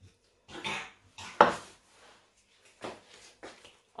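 A metal shaker of icing sugar shaken a few times to dust a cutting board, a short dry rattle each time, with a sharp knock about a second and a half in. Softer handling noises follow near the end.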